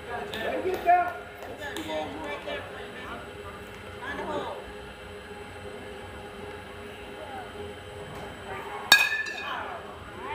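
A metal baseball bat striking a pitched ball near the end: one sharp ping with a brief metallic ring, the loudest sound here. Spectators' voices and calls run throughout, with a single knock about a second in.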